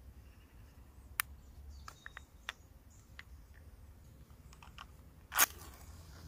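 Light clicks and taps of handling, then a wooden match struck on its box: one short burst about five seconds in, the loudest sound.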